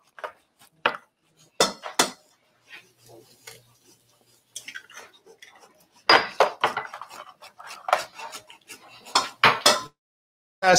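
Sharp taps and clinks of eggs and a metal utensil against a stainless steel mixing bowl as eggs are cracked and handled. A few scattered taps come first, then a quick, busy run of clinks from about six seconds in until just before the end.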